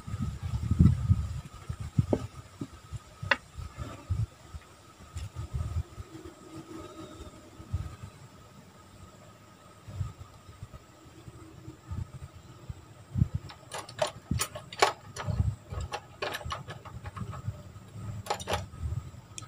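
Handling sounds of a wooden plank and a parang being moved about and laid down: low rumbles and scattered knocks, then a run of sharp clicks and taps in the last few seconds. A faint steady high tone runs underneath.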